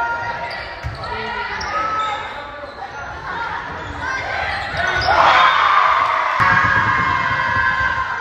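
Volleyball rally in a gymnasium: the ball is struck several times, with sharp hits, while players and spectators call out. The voices swell louder about five seconds in, as the point ends.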